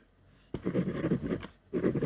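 Ballpoint pen writing on white paper. After a short pause, a run of pen strokes begins about half a second in, stops briefly, and starts again near the end.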